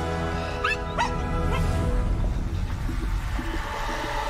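Background music with a dog giving two short, rising whines about a second in.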